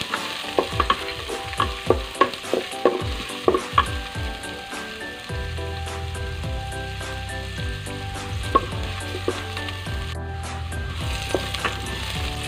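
Chopped red onions sizzling in hot oil in a stainless steel pot, stirred with a wooden spatula that knocks and scrapes against the pot, most often in the first few seconds.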